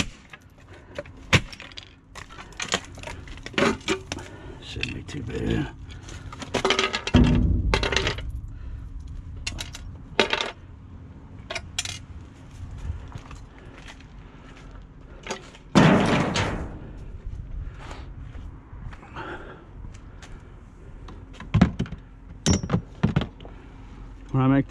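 Metal and plastic clatter as an aluminum electric frying pan is broken apart by hand for scrap: irregular clinks, knocks and cracks, with two louder clattering knocks about seven and sixteen seconds in.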